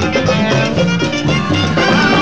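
Live cumbia band playing an instrumental stretch between sung lines: a full band mix with a moving bass line over a steady dance beat.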